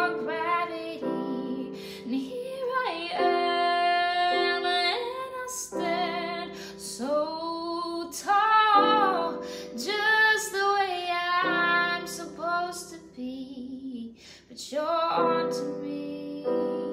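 A woman singing with long, wavering held notes, accompanied by piano chords played on a digital keyboard.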